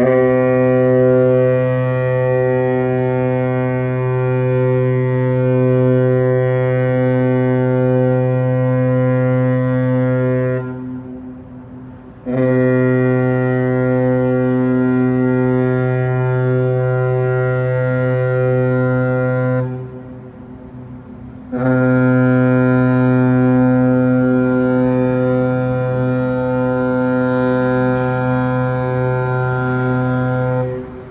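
An oil tanker's horn sounding three long, low, steady blasts of about seven to ten seconds each, with short breaks between, warning a small boat out of its path.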